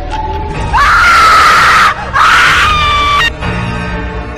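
Two loud screams, each a little over a second long with a brief break between them, over background music.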